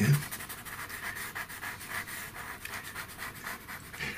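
Pastel pencil scratching across textured pastel paper in many quick short strokes.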